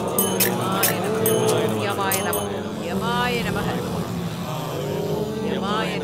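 Film soundtrack: a steady low drone with a quick run of sharp percussion strikes in the first couple of seconds, and voices with wavering, rising pitch over it.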